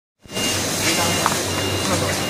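Automatic premade-bag filling and sealing machine running: a steady mechanical hum with a thin, constant high tone over it.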